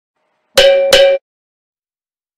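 A short musical intro sound: two quick, bright notes of the same pitch, about a third of a second apart, cut off sharply after the second.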